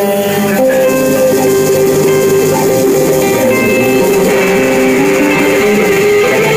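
Live psychedelic rock band playing, led by electric guitar holding long sustained notes.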